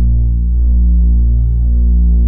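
A low, steady droning tone with a stack of overtones, wavering slightly in level: a held opening note of an indie rock track.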